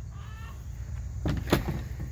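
Faint clucking of free-ranging hens over a steady low rumble, with one sharp knock about one and a half seconds in.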